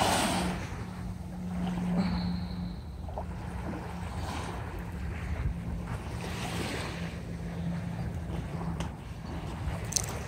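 Small waves washing up on a sandy shore, with wind buffeting the microphone. A steady low hum runs underneath and fades out near the end.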